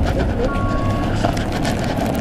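City street noise: traffic running past and the voices of passers-by, with a couple of short high tones about half a second in.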